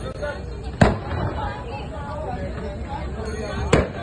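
Two sharp, loud bangs from the burning vehicles, about a second in and again near the end, over people talking.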